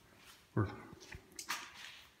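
Mostly speech: a man says one short word about half a second in. A few faint clicks and a brief rustle follow near the end.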